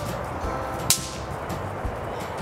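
A snap pop (bang snap) thrown onto concrete, cracking once with a single sharp report about a second in.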